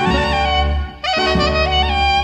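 Klezmer doina music: a clarinet plays a slow, free-rhythm melody of held notes over a sustained accompanying chord. It breaks off briefly about a second in, then comes back on a new note that bends into pitch.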